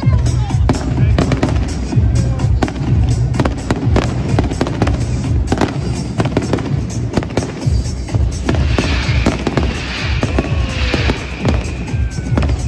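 Aerial fireworks going off in quick succession, a rapid run of bangs and crackles, with a denser fizzing crackle about nine seconds in. Bass-heavy music plays underneath.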